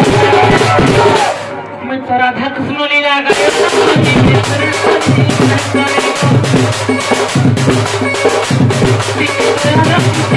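Live folk music: a large barrel drum (dhol) beaten with a stick in a fast, steady rhythm, with a voice over a microphone. The drumming drops out about one and a half seconds in and comes back about three seconds in.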